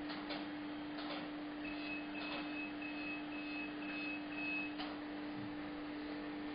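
A dental laser unit beeping, a run of about seven short high beeps at a little under two a second, the signal tone it gives while the laser is firing. A steady low hum runs underneath.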